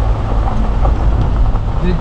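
Jeep driving up an unpaved mountain road: a steady low rumble of engine and tyres on the dirt.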